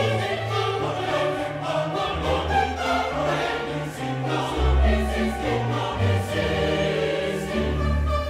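Large mixed choir singing a requiem setting with orchestra, over deep bass notes that change pitch every second or so.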